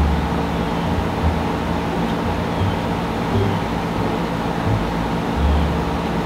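A steady mechanical hum holding several fixed pitches, over a low rumble that swells and fades.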